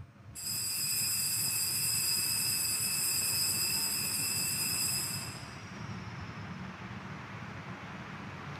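Altar bells rung continuously at the elevation of the host after the words of consecration, a steady high jingling ring that stops about five seconds in.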